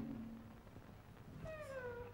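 Cartoon soundtrack heard through hall speakers: a low sung lullaby note trails off, and after a short pause a high, squeaky character voice starts singing with a falling glide, the little mouse protesting that the song is not putting it to sleep.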